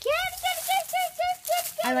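A young girl calling a cat in a high sing-song voice: a quick run of short repeated high notes, about five a second. Ordinary speech starts near the end.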